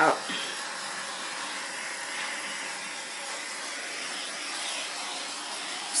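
Steady hiss of a small handheld torch held over wet white acrylic base paint to pop surface bubbles.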